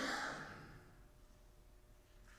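A single short breathy exhale, like a sigh, at the start, fading within about a second.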